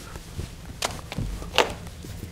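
A quiet pause: faint room tone with a few soft clicks.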